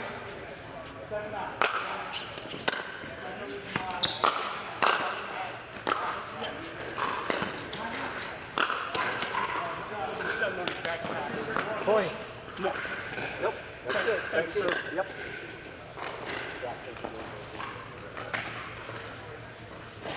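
Pickleball rally on a hard indoor court: paddles hitting the plastic ball in sharp pops at irregular intervals, with ball bounces, in a large hall. Voices and hits from neighbouring courts run underneath.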